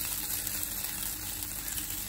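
Steady, soft sizzle of mixed vegetables and paneer frying in a creamy sauce in a nonstick pan.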